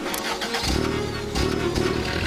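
Cartoon sound effect of a car engine starting up and running, a low steady engine sound setting in about half a second in.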